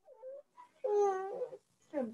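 A short pitched vocal call about a second in, lasting about half a second and bending slightly in pitch, with a fainter one just before it.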